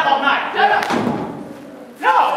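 Voices, then a single dull thump just under a second in, after which the sound dies down.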